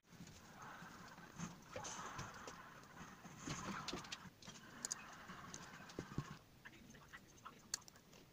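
Faint handling sounds of plastic shampoo bottles and plastic cups, with soft hissing and light clicks, as shampoo is poured and squeezed into the cups.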